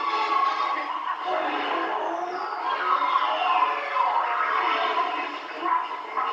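Theme-park attraction soundtrack picked up by a camcorder microphone: a busy mix of music and sound effects, with a falling whistle-like glide about two seconds in.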